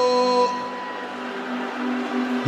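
A single long held musical note, steady in pitch and rich in overtones; it drops in loudness about half a second in and carries on more softly.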